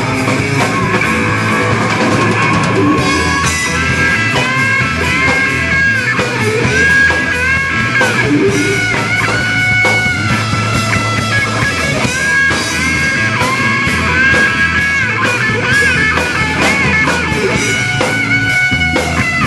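Live rock band playing an instrumental passage: an electric guitar plays a lead line of long held notes with pitch bends, over drum kit and bass guitar.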